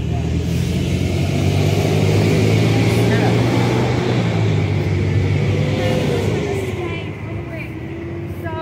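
A motor vehicle passing on the road, its engine drone and tyre noise swelling over the first couple of seconds and fading away by about seven seconds in.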